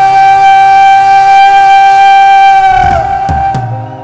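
Live rock band music holding one long sustained note, which bends down in pitch and fades out a little under three seconds in. Two quick percussive hits follow near the end as the music drops away.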